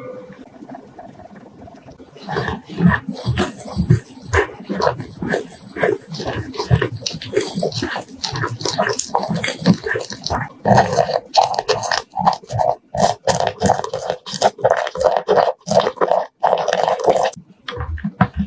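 Silicone-coated balloon whisk stirring thick egg-yolk batter in a glass bowl: wet, sticky squelches and taps in fast, even strokes that begin about two seconds in and grow louder in the second half.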